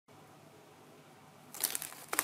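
Near silence, then about one and a half seconds in, a short burst of crackling, crinkling noise.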